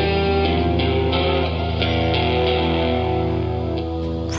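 Slow rock band music with no vocals: an electric guitar picks single notes, about three a second, over a low held bass note.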